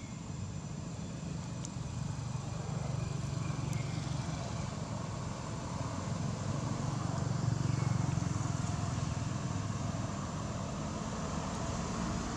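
A low, steady motor-vehicle rumble that swells to its loudest about two-thirds of the way through, with a faint thin high hum above it.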